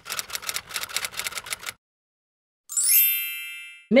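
Typewriter sound effect: a fast run of key clacks lasting under two seconds, a short pause, then a single carriage-return bell ding that rings out for about a second.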